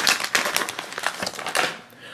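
Foil blind bag crinkling and crackling as hands open it, dense at first and fading out near the end.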